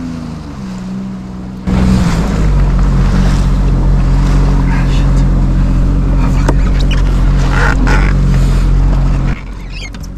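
Sea-Doo jet ski engine running under way, with water rushing past the hull. Its pitch sinks a little at first, then the sound turns abruptly louder about two seconds in and holds steady until it drops back near the end.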